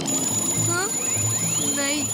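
Cartoon magic sound effect: a high, steady electronic tone with repeated rising whooshes, over background music with a low pulsing beat. A short vocal sound comes near the end.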